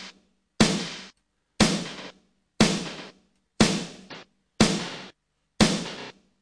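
Snare drum sample from an Ableton Live drum loop playing through the Beat Repeat effect, with its pitch control turned down: one sharp hit every second, each dying away within about half a second.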